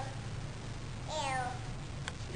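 A toddler's voice imitating a cat: one drawn-out "meow" about a second in, falling in pitch.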